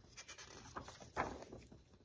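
Faint, breathy laughter from a woman, mixed with the soft rustle of a picture-book page being turned.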